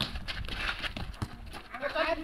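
A spectator's laughter in short broken bursts, with a player's shout starting near the end.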